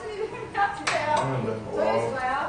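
Men talking, with a couple of sharp clicks about a second in.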